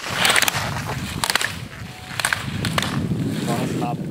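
Slalom ski edges scraping and hissing on hard snow through quick turns, with a few sharp clacks about a second apart as slalom gate poles are struck. A man's short spoken word comes near the end.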